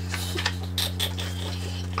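A sheet of paper waved back and forth as a fan to dry glitter paste on the eyelids. It gives soft, repeated rustling and flapping strokes over a steady low hum.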